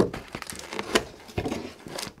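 Plastic film wrapped around a laptop crinkling as the laptop is handled and laid down in a cardboard box, heard as a run of short rustles and light knocks.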